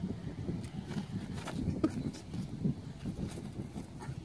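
Wind rumbling on a handheld microphone outdoors, uneven and gusty, with faint soft rustles and brief indistinct murmurs of voices.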